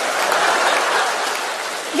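Audience applauding, the applause easing off slightly near the end.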